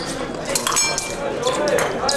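Steel épée blades clinking against each other in a few quick metallic contacts, each with a short ring, clustered a little under a second in.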